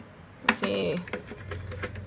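Screwdriver working a screw out of a plastic wall-clock back: a run of small, sharp clicks and taps, the sharpest about half a second in.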